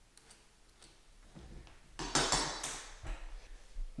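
Faint taps of a pencil drawing a line along a metal square, then, about halfway through, a louder metallic scraping and clinking as the square is handled, followed by a few light knocks.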